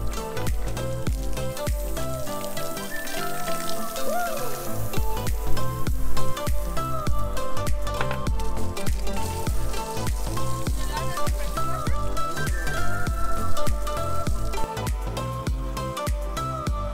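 Background music with a steady beat; the bass drops out briefly a few seconds in, then returns.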